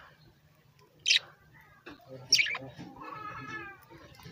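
Caged budgerigars calling: two short, sharp, loud high calls a little over a second apart, then a longer, lower wavering call near the end.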